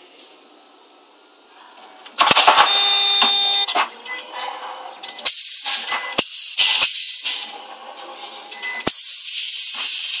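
Automatic coaxial cable stripping machine working through a cycle: a loud clattering whir with steady whining tones starts about two seconds in, followed by sharp pneumatic clacks and several bursts of compressed-air hiss as its cylinders and valves fire.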